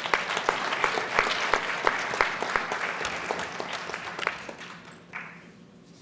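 Audience applauding, with a few individual claps standing out sharply, dying away about four to five seconds in.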